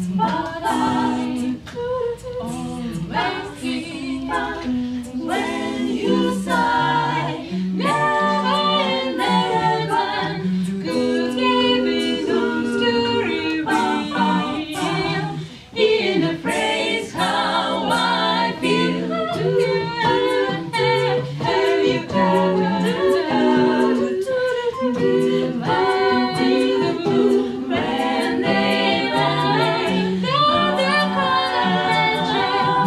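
An a cappella group of seven women singing a jazz number in several-part harmony, with a light beat of clicks keeping time.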